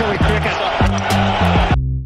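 Background music with a steady beat and bass line, laid over the match broadcast's crowd and ground noise. The broadcast noise cuts off suddenly near the end, leaving the music alone.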